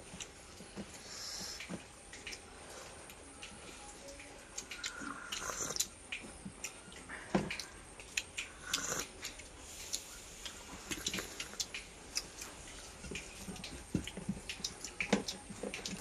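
Quiet eating sounds: scattered small clicks and brief sips and slurps as broth is drunk from a steel bowl.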